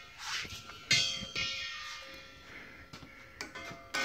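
Metal fittings of a hydrogen filling hose clinking: a sharp metallic ding about a second in that rings on, a lighter knock just after, and another click with a short ring near the end, after a brief soft rush at the start.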